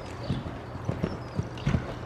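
A horse cantering on soft dirt arena footing: dull hoofbeats in an uneven canter rhythm, a few thuds a second.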